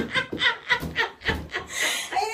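Breathy, wheezing laughter: a run of short rasping bursts, about four or five a second.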